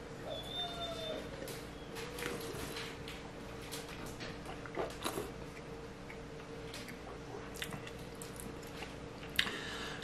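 A person sipping red wine from a glass and tasting it: faint slurping and swishing in the mouth, with scattered small clicks and lip smacks over a low steady hum.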